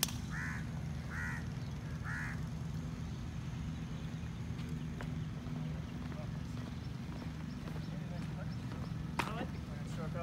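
A bird calling three times in quick succession, short calls about a second apart, over a steady low hum. A single sharp click near the end.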